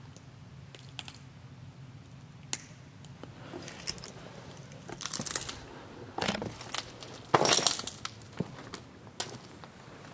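Footsteps crunching over broken glass and debris: irregular crunches and cracks, sparse at first and louder and closer together from about five seconds in.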